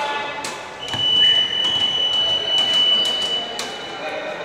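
A single long, steady, high-pitched signal tone sounds in a gym during a stoppage in a basketball game. It starts about a second in, lasts nearly three seconds and stops shortly before the end, with a few short knocks around it.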